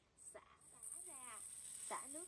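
Kitchen faucet turned on, water running into a plastic basin in a stainless steel sink: a steady, faint hiss that starts a little under a second in.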